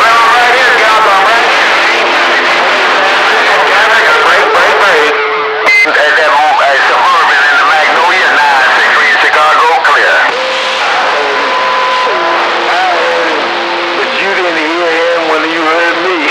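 CB radio receiver putting out garbled, static-laden voices of incoming stations, with steady whistling tones over them at times and a brief break in the signal about five seconds in.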